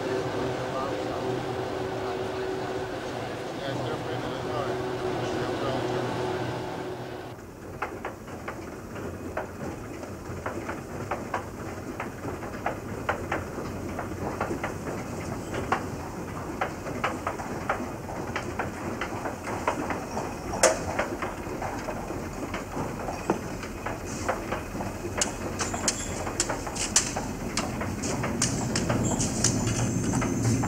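Metro train running, heard from inside the car with passengers' voices. About seven seconds in the sound cuts to irregular sharp taps of a white cane and footsteps on a hard station floor.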